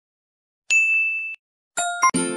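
Electronic ding sound effects from a subscribe-button animation. A single held ding comes about two thirds of a second in, and a brighter chime of several tones starts near the end.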